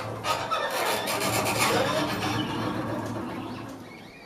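Free-improvised trio music from tenor saxophone, bowed double bass and guitar: scraping, rasping textures over a low held note. It is dense and busy in the first two seconds and thins out and grows quieter near the end.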